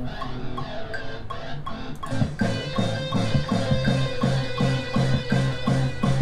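Playback of a multitrack rock recording through speakers: the guitar solo section, with electric guitars and a bass guitar line, the low notes coming in rhythmically about two seconds in.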